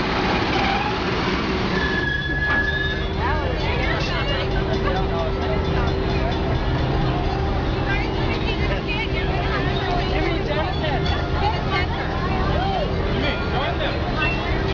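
Diesel locomotive of a stationary holiday-lights passenger train idling with a steady droning hum, under the chatter of a crowd. A brief high tone sounds about two seconds in.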